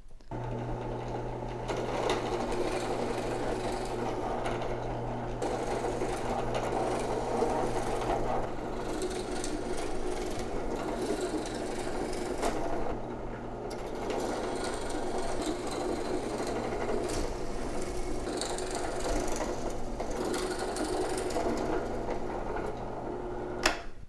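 Benchtop drill press running steadily, its bit boring holes into a pine board through the cutouts of a metal faceplate. The motor hum stays constant while the cutting noise over it rises and falls from hole to hole.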